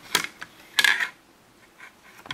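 Handling noise from the plastic earcup of a wireless headset being flipped over on a wooden table: a sharp click just after the start, then a short scrape-and-rattle just under a second in.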